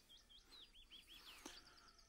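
Faint birdsong over near silence: a short run of quick slurred chirps, then a rapid, higher trill near the end.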